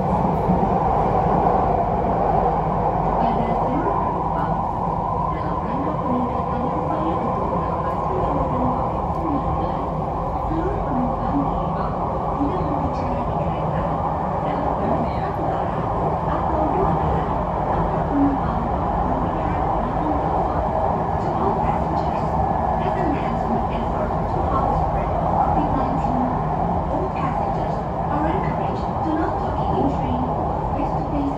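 Steady running noise of a Jakarta MRT electric train heard from inside the carriage as it travels along the elevated track, an even rumble with no stops or sudden changes.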